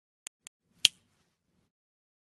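Three short, sharp clicks, two faint and then a louder one under a second in: a click sound effect on an animated end card.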